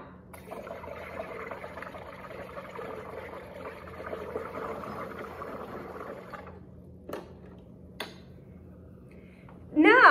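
SodaStream carbonating a bottle of wine: CO2 gas bubbling through the wine for about six seconds, then stopping. It is followed by two short clicks.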